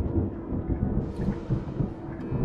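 A deep, uneven rumble starts suddenly, and a hiss joins it about a second in.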